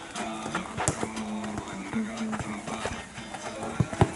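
Futsal players' running footsteps and ball kicks on artificial turf, a scatter of quick knocks and thuds with one sharp strike about a second in, under distant calling voices.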